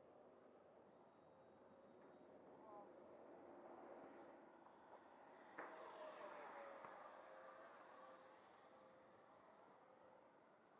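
Faint whine of an RC jet's 90mm electric ducted fan (FMS metal fan unit) heard from the ground as the model flies by overhead, swelling slightly about five and a half seconds in and then falling in pitch as it moves away.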